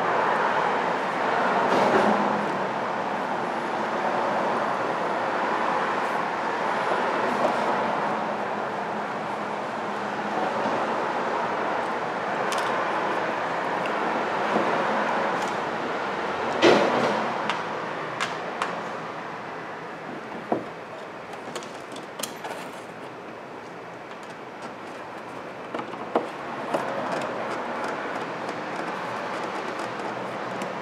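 Hand screwdriver working screws out of a plastic tail light housing: scattered small clicks and taps, the sharpest about 17 seconds in, over steady background noise.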